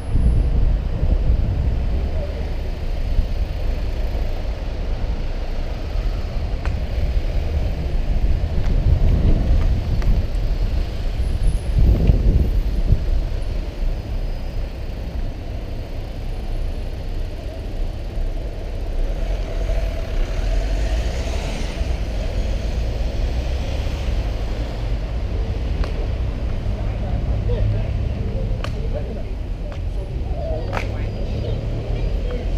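Wind rumbling over a bike-mounted camera's microphone while riding in urban traffic, with motor vehicles running close by. The rumble swells louder about 9 and 12 seconds in.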